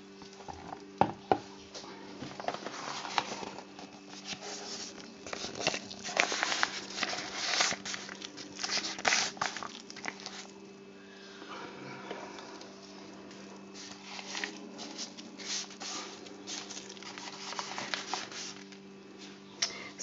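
A spoon scraping and tapping thick soap batter into a piping bag: irregular clicks, scrapes and soft squishing, busiest in the middle, over a steady low hum.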